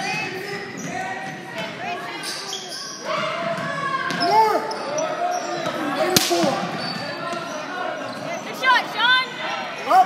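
Sneakers squeaking on a hardwood gym floor as players run and cut, with a basketball bouncing and one sharp knock about six seconds in.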